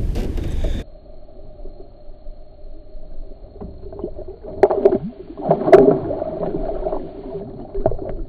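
Water splashing and gurgling as a released smallmouth bass kicks away at the surface, with two louder splashes about halfway through and a smaller one near the end, over a steady low hum.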